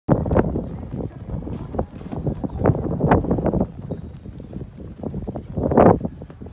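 Wind buffeting the microphone in irregular gusts, loudest near the start, about three seconds in, and just before the end.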